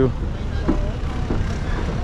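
Steady low rumble of a longtail boat engine running at the pier, with a few brief, faint voices over it.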